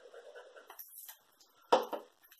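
Glue applicator rubbing across card stock with a faint scratchy sound, then a brief swish. About 1.7 s in comes one sharp knock on the desk, the loudest sound, with a smaller knock just before the end.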